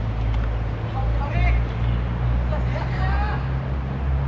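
Football players calling out on the pitch, heard from a distance as a few short shouts, over a steady low rumble.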